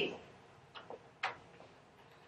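Two faint, short clicks about half a second apart in a quiet room, just after the tail end of a spoken word.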